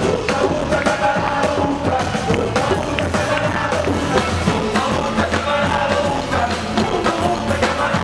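Upbeat rock band music with a steady drum beat.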